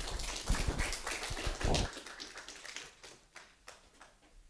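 Audience applause, dense at first and thinning out over about two seconds, with a few last claps after.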